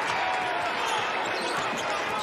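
A basketball dribbled on a hardwood court under steady arena crowd noise.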